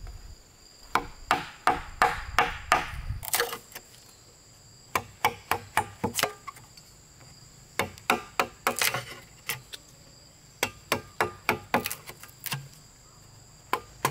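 A knife batoned with a wooden stick, cutting a rectangular hole into a green bamboo pole: sharp wooden knocks in quick runs of several strokes, with short pauses between the runs.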